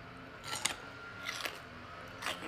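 Close-miked eating sounds: a mouthful of food being bitten and chewed, with two crisp crunches, about half a second and about one and a half seconds in.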